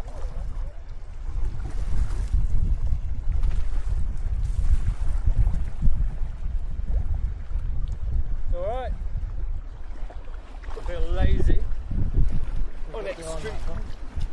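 Wind buffeting an outdoor action-camera microphone as a steady low rumble. A few brief voice sounds break in during the second half.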